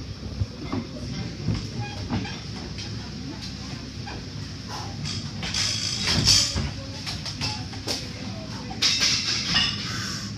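Scattered clicks and knocks from a loaded barbell being unracked and walked out, with hand-clapping and shouted encouragement from onlookers in bursts about halfway through and again near the end.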